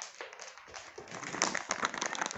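Malamutes' claws clicking and scrabbling quickly on a hard wood-effect floor as the dogs dash across it.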